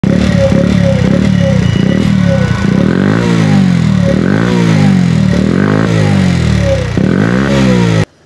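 A small motorbike engine running rough at first, then revved up and down over and over, about one rev every second and a half, stopping abruptly at the end.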